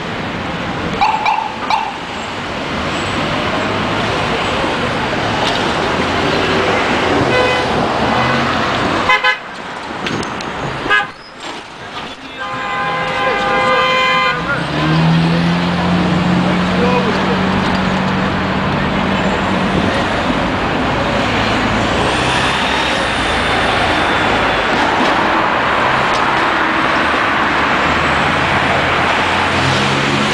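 Busy city street traffic with New York City transit buses and cars going by. A car horn sounds for about two seconds near the middle, and a deep engine note holds for several seconds just after it.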